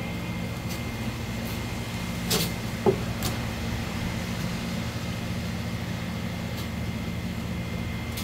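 Steady low machine hum, with two short knocks on the plastic cutting board about two and a half and three seconds in as fish fillets are handled.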